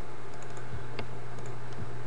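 A steady low electrical hum with hiss runs throughout. Over it come a few faint computer mouse or keyboard clicks, the sharpest about a second in, as the file dialog is navigated.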